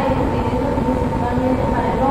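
A steady low rumbling noise, with faint voices talking over it.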